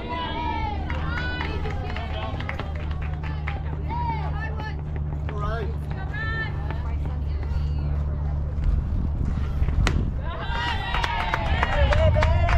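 Voices calling out and chattering over a steady low hum. About ten seconds in comes a single sharp crack of a softball bat hitting the ball, followed at once by louder shouting and cheering.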